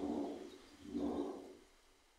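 A pigeon cooing: two low coos, each under a second long, about a second apart.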